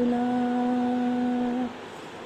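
A woman singing a Hindi Christian devotional song unaccompanied, holding one steady note for about a second and a half and then breaking off for a breath.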